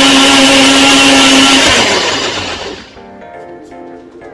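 Personal blender running at full speed, puréeing rose petals in pomegranate juice, then released about two seconds in and spinning down. Quieter background music follows.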